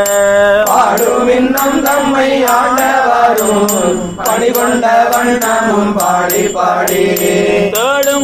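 A Tamil Shaivite devotional hymn sung by a group of voices over a steady drone, with a metallic jingle keeping time at about three strokes a second.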